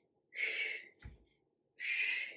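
A woman's hard, hissing exhales in rhythm with skater jumps, two breaths about a second and a half apart, with the dull thud of a foot landing between them.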